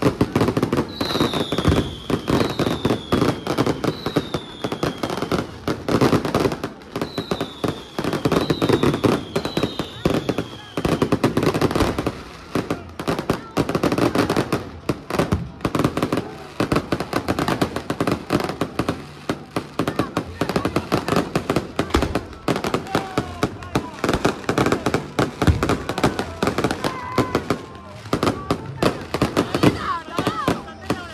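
Aerial fireworks display: a dense, continuous crackle of bursting shells and firecrackers. Six high falling whistles sound in the first ten seconds, and crowd voices run underneath.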